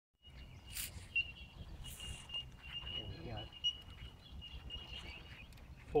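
Outdoor lakeside sound: low wind rumble with a steady high-pitched animal call running throughout, two brief splashy hisses of water stirred in a carp sling about one and two seconds in, and a faint voice near the middle.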